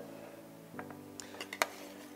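Soft background music with a few light metallic clicks in the second half: a metal spoon knocking on an aluminium sheet pan as raw shrimp are scraped off it into the pot.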